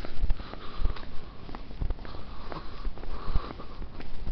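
Footfalls of a person moving quickly on foot, with the camera carried by hand: dull thumps roughly every half-second to second. Between them come hard breaths in and out.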